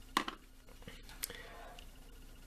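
Quiet room tone with a faint steady hum, broken by a short soft sound just after the start and a small click about a second later.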